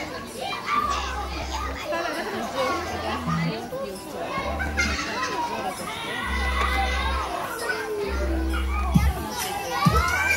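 Many young children's voices chattering, laughing and calling out at play, overlapping one another.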